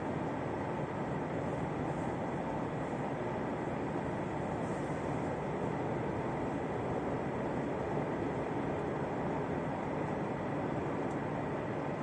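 Steady running noise of an X73500 diesel railcar under way, heard from inside the passenger cabin: an even low rumble of the moving railcar with a faint steady whine above it.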